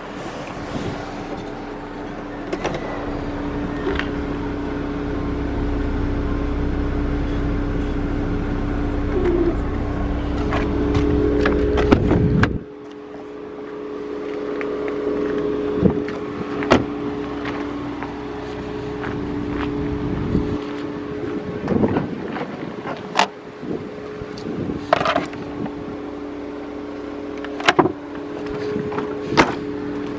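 A steady mechanical hum throughout, with a low rumble that stops abruptly about twelve seconds in. Scattered clicks and knocks follow, from a parked car's doors being handled.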